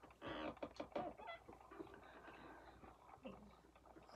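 Faint clicks and rustles of small diecast model cars being handled, loudest in the first second and a half, over a low steady hum.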